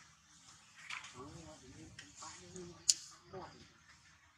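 Faint wavering voices in the background, with one sharp click a little before three seconds in.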